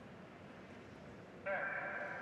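A hushed indoor arena, then about one and a half seconds in a single held, tone-like call comes over the start-line loudspeakers and slowly fades: the starter's 'set' command before a hurdles start.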